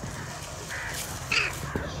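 Two short bird calls close together in the middle, the second louder, over a steady low rumble.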